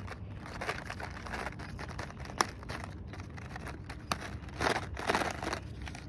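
Paper seed packet crinkling and rustling as bean seeds are shaken out of it, with one sharp click a little over two seconds in and louder rustles near the end.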